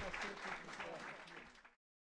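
Audience applauding, with a few voices talking through it, fading down and then cutting off suddenly near the end.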